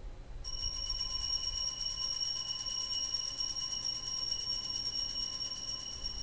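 Altar bells rung continuously at the elevation of the consecrated host after the words of consecration. They make a bright, rapid, shaken ringing of several high pitches that starts about half a second in, holds steady, and fades near the end.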